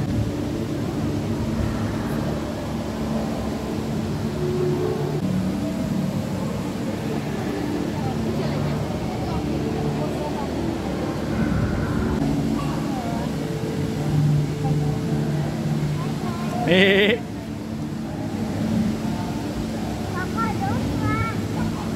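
Steady background of people talking over a constant low hum, with no one speaking clearly. Late on, a short loud voice cry rises sharply in pitch.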